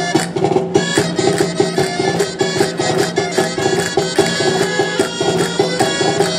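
Traditional Spanish folk dance music: a melody over a steady, quick percussive beat.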